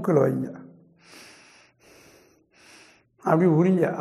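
A man's breathing: three short, faint breaths through the nose, about a second apart.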